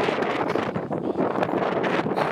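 Wind buffeting the microphone: a steady rushing noise broken by frequent short knocks.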